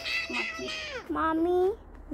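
A young girl's two long, high-pitched whining calls, drawn out and wavering like a cat's meow, with the second ending about three-quarters of the way through.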